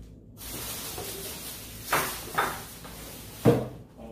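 Thin plastic grocery bag rustling and crinkling as a hand rummages in it and pulls items out, with three louder sharp rustles about two, two and a half and three and a half seconds in.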